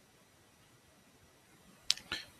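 Near silence, then a single sharp click just before the end.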